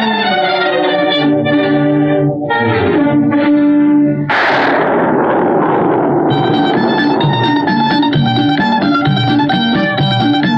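Orchestral film-song introduction: sustained chords slide downward, then a sudden loud crash about four seconds in fades away over a couple of seconds. Near six seconds a rhythmic plucked-string accompaniment with a steady beat takes over.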